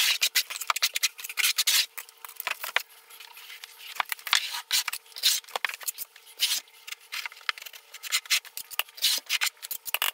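Quick, irregular scraping of a small trowel through thinset mortar, scooped from a bucket and spread over the seams of a shower's waterproofing membrane.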